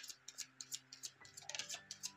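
Tarot cards being handled and shuffled by hand: light, irregular clicks and flicks of card against card, several a second, heard faintly.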